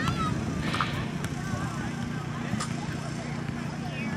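Indistinct voices of people talking and calling across an open field, with a steady low rumble underneath.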